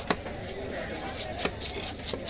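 A heavy cleaver chopping through cobia flesh into a wooden chopping block, two sharp strikes about a second and a half apart.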